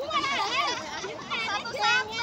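Several high-pitched voices talking and calling out over one another, as in an excited group game.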